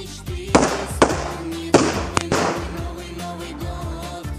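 Firecrackers going off: several sharp bangs in the first half, each with a short trailing crackle, over music with a steady beat.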